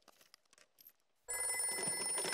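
A few faint clicks, then a telephone starts ringing suddenly about a second in, loud and steady.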